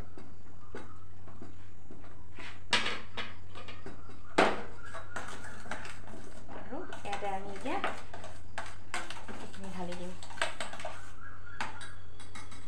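A metal spoon clinking and scraping against a stainless steel bowl and pot as a soap mixture is stirred and handled, with scattered sharp knocks, the loudest about four seconds in.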